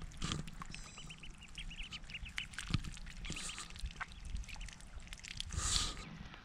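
Mallard ducklings peeping: many short, high peeps from several chicks, overlapping and irregular. A brief rush of noise comes near the end.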